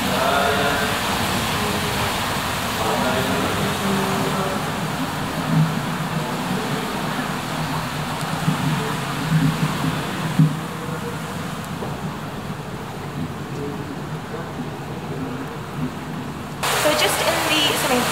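Steady rush of water in an echoing indoor spa pool hall, with faint voices of bathers. The noise turns duller about ten seconds in, and a louder, brighter rush of water starts shortly before the end.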